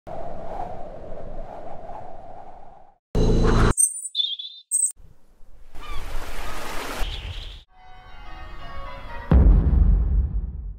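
Edited intro soundtrack made of short, separate sound effects and music fragments that start and stop abruptly one after another, ending in a loud, deep boom about nine seconds in that dies away slowly.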